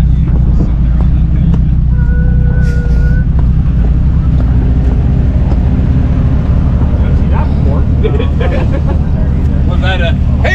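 Jeep Cherokee XJ engine running steadily at low revs as the Jeep crawls over rocks and mud. A brief steady tone sounds about two seconds in.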